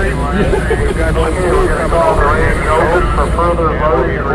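Voices talking throughout, over a steady low rumble.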